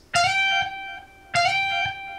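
Electric guitar playing a lead lick: a note picked at the 14th fret of the high E string and slid quickly up to the 16th, played twice about a second apart.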